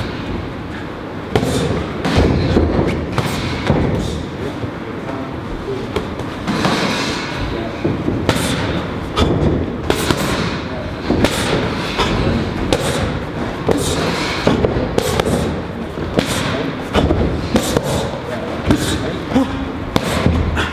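Boxing gloves smacking against a trainer's punch mitts in quick, irregular combinations of sharp hits.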